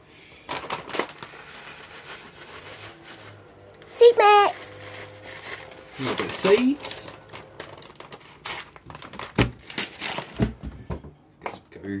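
Crinkling and rustling from a packet being handled as a seed mix is sprinkled onto smoothie bowls, with scattered small clicks. Two short wordless voice sounds come about four and six and a half seconds in.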